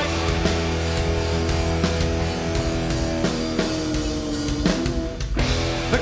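A live rock band playing an instrumental passage: strummed acoustic and electric guitars over bass and drums. The sound thins out briefly near the end, just before the lead vocal comes back in.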